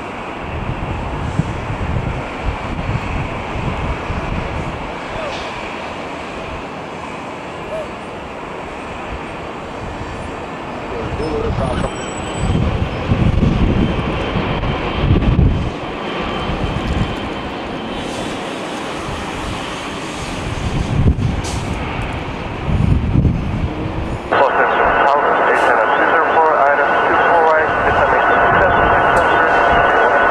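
Jet airliner engine noise at an airport, with low gusts of wind buffeting the microphone. About 24 seconds in, a louder hissing sound with a steady whine cuts in abruptly and holds to the end.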